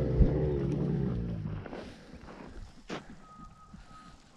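Dromedary camel giving a low, drawn-out moaning call that fades out about two seconds in, followed by a single sharp click near three seconds.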